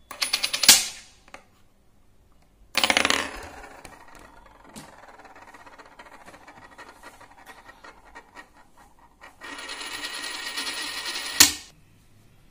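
A metal coin spun on its edge on a wooden tabletop. A first spin topples with a clack under a second in. A second spin starts about three seconds in and whirs on quietly, then its rattle grows louder for the last two seconds as the coin wobbles down, ending in a sharp clack as it falls flat.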